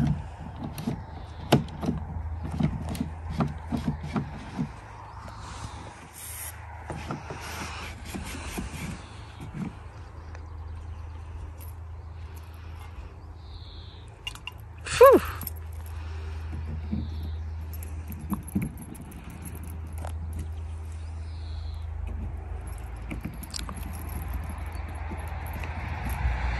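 A key rattling and clicking in a stuck caravan door lock as it is worked back and forth, with irregular metal clicks and knocks, thick in the first few seconds and sparser later. A short squeak about halfway through is the loudest sound.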